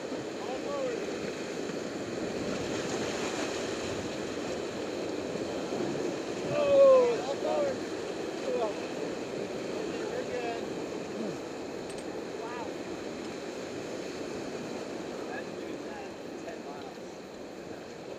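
Whitewater rapids rushing and churning steadily around a raft. A person's shout rises above it about seven seconds in, with a few fainter calls here and there.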